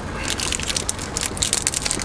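Plastic film wrapper of a biscuit crinkling and crackling as it is handled and torn open, starting a moment in.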